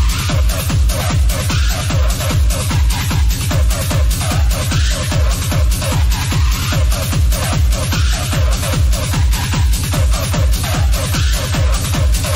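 Techno played through a DJ mixer and decks: a steady four-on-the-floor kick drum at about two beats a second, with hi-hats and synth layers over it.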